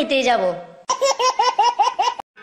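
A voice trails off, then about a second in comes a high laugh in quick, even bursts, about seven "ha"s, at a loud level.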